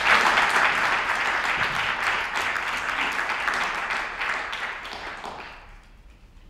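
Audience applauding, the clapping strong at first and dying away near the end.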